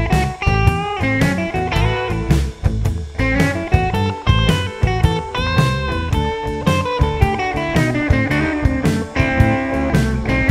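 Telecaster-style electric guitar playing a blues lead over a backing track with bass and drums. The lead is a run of single notes that blends minor and major pentatonic, with string bends and slides.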